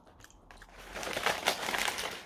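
Paper bag crinkling and rustling as it is handled and opened. The crackle starts about half a second in and gets louder.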